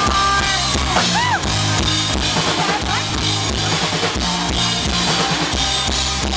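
Live rock band playing loudly: a drum kit and electric guitar, with a steady driving beat.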